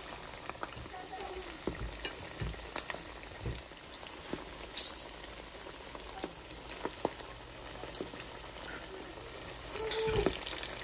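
Tuna kebabs sizzling steadily as they fry in oil in a pan. A fork and spatula turning them make scattered light clicks and scrapes against the pan.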